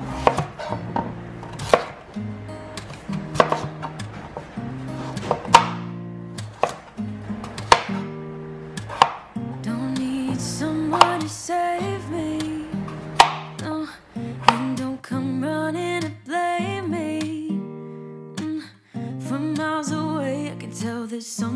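Kitchen knife chopping pumpkin and potatoes on a plastic cutting board: sharp knocks of the blade hitting the board every second or two, over background guitar music.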